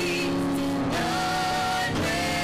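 Group of women singing a gospel song into microphones, holding long notes with vibrato, moving to a new held note about a second in.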